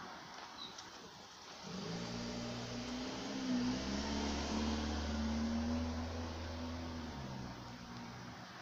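A motor vehicle's engine on the street, a low steady hum that comes in about two seconds in and fades away near the end, over background traffic noise.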